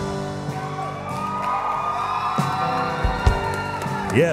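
A live worship band plays soft, steady background music: held keyboard chords, with a couple of low drum beats about three seconds in.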